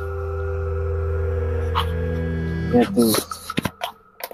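Background music of sustained, unchanging chords with a single spoken word laid over it near the end. The music cuts off abruptly shortly before the end, leaving a few faint clicks.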